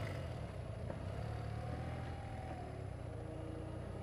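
BMW R65LS's air-cooled flat-twin engine running steadily at low speed as the motorcycle rolls along.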